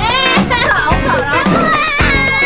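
A girl screaming and shrieking in a high pitch as she is launched down a zipline, over background music with a steady beat.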